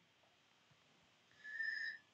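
Near silence, then a faint steady high whistle-like tone for about half a second near the end.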